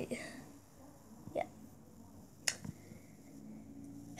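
Quiet room with two brief, faint clicks about a second apart, after a boy's last word trails off.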